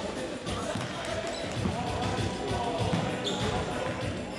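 Irregular thuds of a futsal ball being kicked and bouncing on a sports hall floor, over music and voices.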